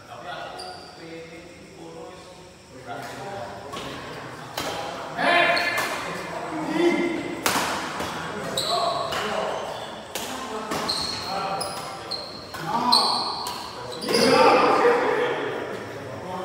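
Doubles badminton rally in a large echoing hall: repeated sharp racket strikes on the shuttlecock and short high squeaks of shoes on the court floor, mixed with players' voices and shouts that get loudest about a third of the way in and near the end.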